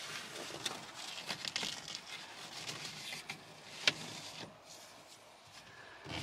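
A steering wheel cover being stretched and worked onto a car's steering wheel: faint rustling and scraping of the cover against the rim, with scattered small clicks and one sharper click about four seconds in. The sound dies down near the end.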